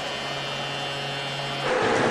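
Ice-hockey arena ambience: a steady hum overlaid with sustained, held tones like music over the arena sound system. Near the end it changes to a louder, broader wash of noise.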